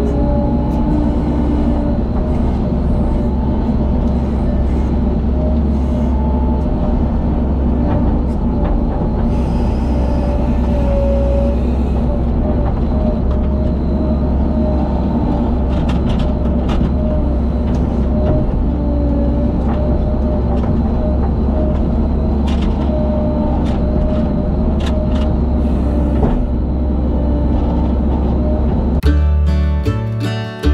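Skid steer loader's engine running steadily, heard from the operator's seat while it carries and dumps a bucket of shale, with a few scattered knocks over the drone. About a second before the end, acoustic guitar music starts.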